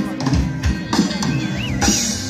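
Live band playing through the stage sound system, heard from the crowd: drum kit hits and bass with guitar, and a wavering high note in the second half.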